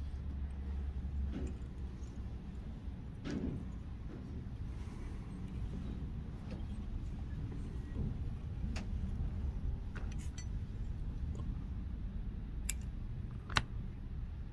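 Fly-tying tools handled at a vise while a hackle feather is wrapped along the hook: scattered faint clicks and taps, with two sharper clicks near the end, over a low steady hum.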